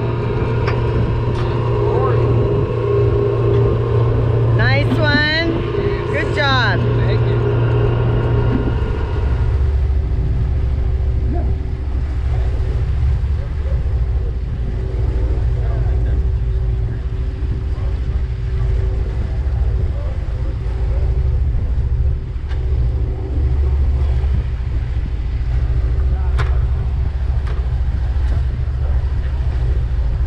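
Engine of a large offshore fishing boat running steadily under way, a continuous low drone with a steady hum, together with the rush of its wake. Voices are heard over the first several seconds, and there is a single sharp click near the end.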